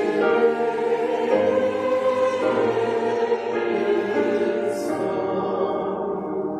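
Church choir singing slow sustained chords, the harmony changing about once a second.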